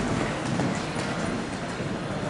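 Hoofbeats of a show-jumping horse cantering on an indoor arena's sand footing.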